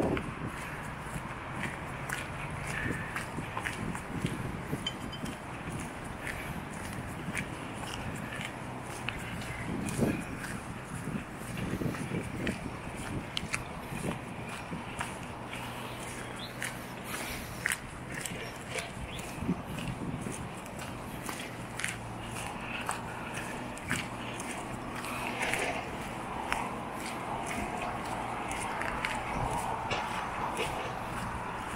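Footsteps walking at an even pace on a paved path, over a steady low hum.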